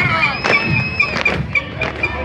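Parade marching music with drum beats, and a long high whistle blast held for about the first second.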